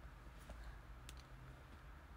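Near silence: faint room tone with two small sharp clicks, about half a second and a second in.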